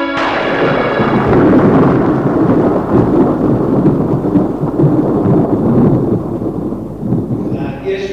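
A roll of thunder: a sudden crack, then a low rumble that fades near the end.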